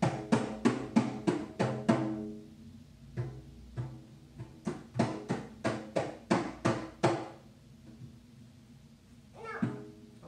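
A small hand-held frame drum struck by hand in quick runs of about four beats a second: a short run of about eight strikes, a pause, then a longer run of about a dozen, the turns of a drum call-and-response.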